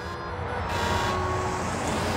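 Heavy truck on a road, its engine and tyres growing louder over about the first second as it approaches, then running steadily.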